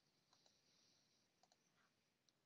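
Near silence, with a few very faint, short clicks.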